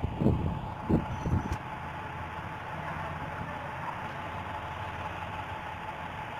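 Steady background noise, an even hiss with a faint constant hum-tone, with a few brief soft sounds in the first second and a half.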